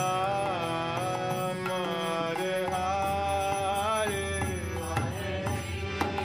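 Devotional kirtan: a male voice sings long, sliding melodic phrases over a harmonium's sustained chords, with a few light mridanga drum strokes in the second half.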